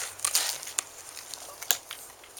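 A mini pig mouthing and chewing a treat from a hand: a few irregular wet clicks and crackles, the sharpest a little before the end.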